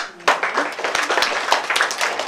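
A single sharp knock, then a roomful of children applauding with dense, irregular clapping.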